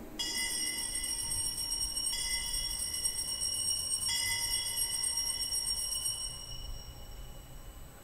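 Altar bells rung three times, about two seconds apart, each stroke ringing on with several high clear tones and dying away near the end. The ringing marks the elevation of the host at the consecration of the Mass.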